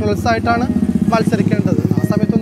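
A motorcycle engine running close by on the street, a low rapid pulsing that becomes prominent about a second in, under a man's speech.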